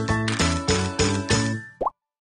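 Bright intro jingle with evenly spaced plucked-sounding notes, about three a second, which stops near the end. A short rising 'plop' sound effect follows and the audio cuts off.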